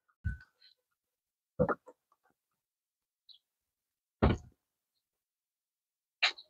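Three short thumps, about a second and a half and then two and a half seconds apart, with near silence between them.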